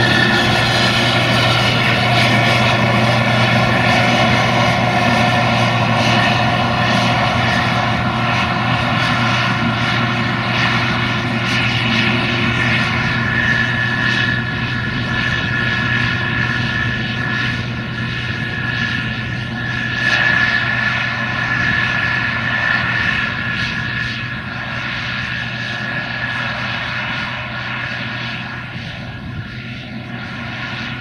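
Case IH 2166 Axial-Flow combine running while harvesting corn: a steady diesel engine drone with a high whine above it, slowly fading as the machine moves away.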